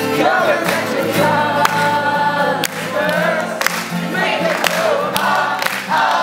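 Acoustic guitars strummed while a group of young voices sings along together.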